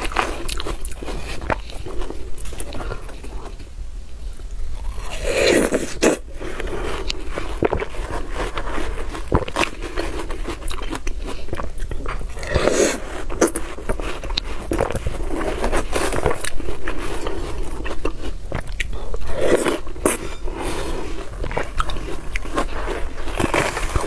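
Close-up eating sounds of ripe watermelon: a metal spoon scraping and scooping chunks from a half melon, then wet bites and chewing of the juicy flesh. Louder bites come about every seven seconds, with small clicks and slurps between them.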